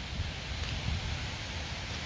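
Quiet rustling and light scraping of a small metal pick and fingers working at a dried mud dauber tube, over a steady low background noise.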